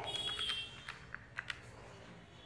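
Handheld electronic calculator being keyed: a brief high steady tone near the start, then a few short, sharp key clicks in the second half.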